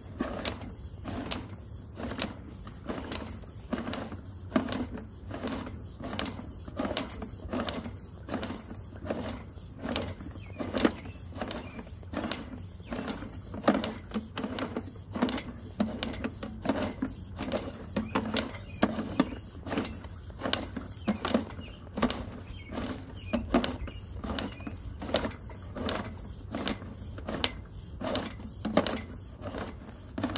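Sewer inspection camera cable being reeled back out of a mainline pipe, its reel clicking rhythmically about twice a second over a steady low hum.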